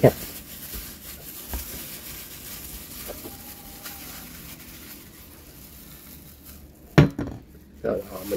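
Quiet handling sounds of a plastic-gloved hand rubbing salt-and-chili marinade onto a catfish, with one sharp knock about seven seconds in as a stainless steel bowl is set down on the table.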